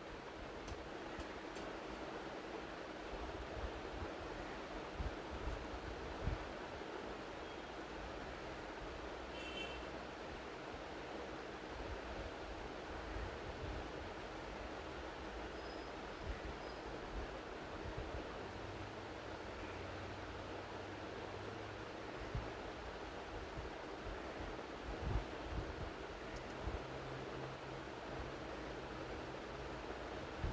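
Steady background hiss of an open microphone, with occasional faint low thumps and a few soft clicks.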